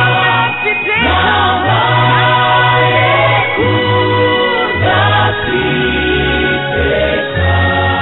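A gospel choir sings a Christian worship song over instrumental backing with a low, sustained bass line. The sound is narrow-band and dull, cut off above the upper mid-range.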